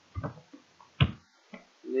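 Computer keyboard keystrokes while typing code, with one sharp, loud key click about a second in.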